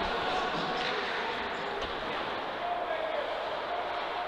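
Ice hockey rink ambience: a steady murmur of voices from the stands and around the rink, with faint stick and skate noise from play on the ice.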